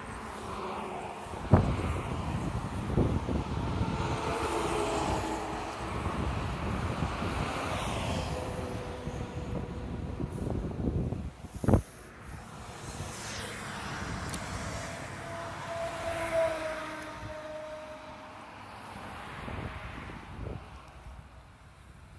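Road traffic passing, with wind buffeting the phone's microphone. Two sharp knocks cut through, about a second and a half in and again near the twelve-second mark.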